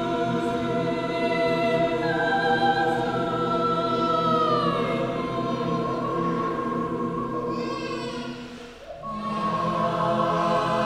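Mixed SATB choir singing unaccompanied, holding sustained chords. An upper line slides downward about halfway through, the sound thins almost to a break near the end, and then a new chord enters.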